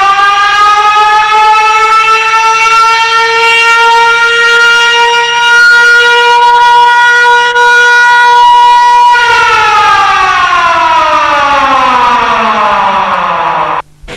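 A siren giving one long wail. It winds up, holds a steady pitch until about nine seconds in, then winds slowly down and cuts off just before the end. It stands in for the siren of a cycle-rickshaw 'ambulance'.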